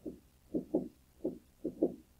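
A woman's voice quietly muttering a few short syllables.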